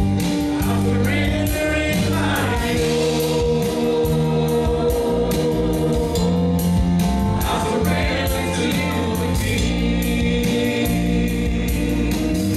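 Live gospel worship music: women singing into microphones over a band of electric guitar, keyboard and drums with a steady beat.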